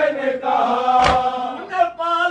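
A man chanting an Urdu noha lament in a slow, drawn-out melody, with other voices joining in, and a sharp chest-beating (matam) strike about a second in that keeps a slow beat.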